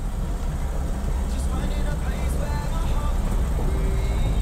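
Lada VAZ-2105's carburetted four-cylinder engine running steadily as the car drives slowly, a low even engine sound.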